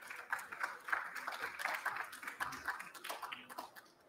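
Audience applauding, a patter of many hand claps that dies away near the end.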